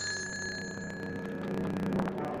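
A handbell rung by hand, struck at the start, its several high tones ringing on and slowly fading over a low steady hum.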